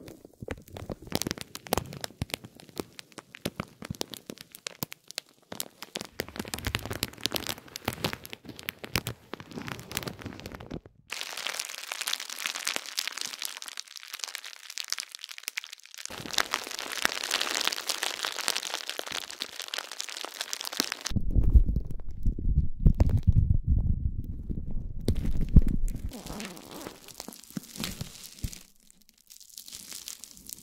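A run of plastic crinkling sounds. For the first ten seconds or so, a silver spiked metal roller rolls over clear plastic film in dense crackles with soft low thuds. Then hands rub a crinkly plastic sheet with a steady, fizzy, high rustle, followed by deeper pressing sounds with low thumps and, near the end, lighter crackles.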